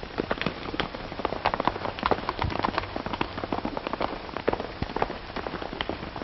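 Hooves of several galloping horses clattering in a dense, irregular patter, heard through an old film soundtrack.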